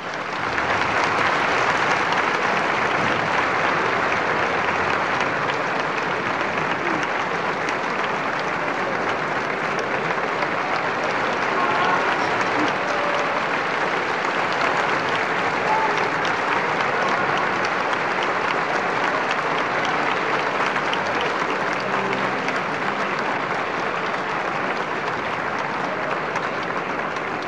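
Opera-house audience applauding steadily and at length right after an operatic duet ends, heard on an old live recording.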